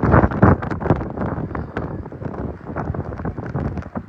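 Strong typhoon wind buffeting the microphone in loud, uneven gusts, with a rough rumble and crackle.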